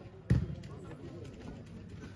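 A volleyball struck once with a dull thump about a third of a second in, a player passing the ball in a rally, over a low murmur of voices.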